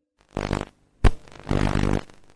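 Glitchy, distorted electronic bursts opening a song: a short low buzzing burst, a sharp click about a second in, then a longer low buzzing burst near the end.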